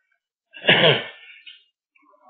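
A person sneezing once, a single sudden loud burst about half a second in that dies away within a second.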